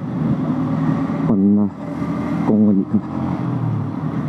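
Motorcycle engine running steadily under way at low road speed, a continuous low hum with road and wind noise.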